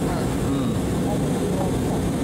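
Steady airliner cabin noise in flight: a deep, even rumble from the aircraft, with faint muffled voices underneath.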